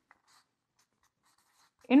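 Marker writing on a whiteboard: faint, short scratching strokes.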